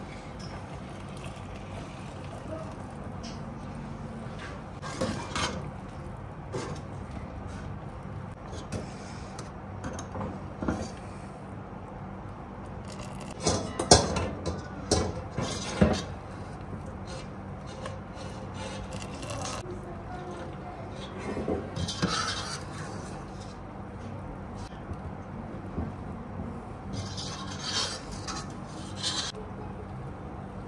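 Scattered clinks and knocks of a stainless-steel wire skimmer against a stainless pot and bowl as cooked sour cherries are scooped out of jam syrup. The loudest knocks come in the middle, and a steady low hum runs underneath.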